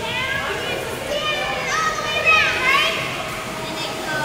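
A child's high-pitched voice calling and squealing without clear words in an indoor pool hall, loudest a little past halfway with a squeal that sweeps up and down. A steady low hum runs underneath.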